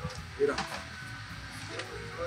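A man's voice briefly saying "mira" over quiet background music, with a few faint clicks.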